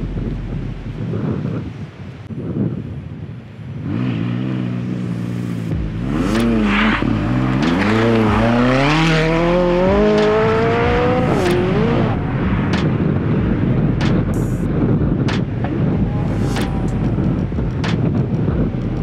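McLaren 570S Spider's twin-turbo V8 pulling away and accelerating hard. The engine note climbs in pitch, drops back at a gear change, then climbs again, before giving way near the end to a steady rushing noise with scattered clicks.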